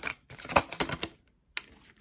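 Tarot cards being shuffled and flicked through by hand: a quick run of sharp card clicks over the first second, then one more click a little past halfway.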